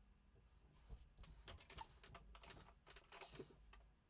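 Near silence with a faint, irregular run of small clicks and scratches from about a second in until near the end.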